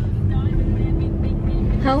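Steady low road and tyre rumble inside the cabin of a moving car, with a faint steady hum for just over a second in the first part; a woman starts to speak near the end.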